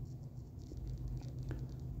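Faint small clicks and rubbing as an automatic watch movement is pressed dial-side down into a plastic movement holder, a couple of light ticks over a low steady hum.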